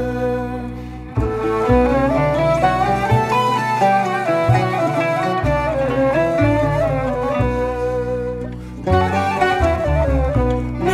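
Instrumental passage of a Sephardic melody played by a Greek folk ensemble: a bowed lyra and plucked qanun carry the tune over held double bass notes. The phrase drops away about a second in before the band comes back in, and a new phrase starts near the end.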